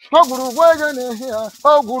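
A man chanting an incantation, repeating the sing-song word "guru, guru" in short rising and falling phrases. A hiss sits high above the voice during the first second.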